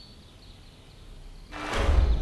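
Faint, short, high-pitched bird chirps. Then, about one and a half seconds in, a sudden loud rushing noise with a deep rumble sets in and keeps going.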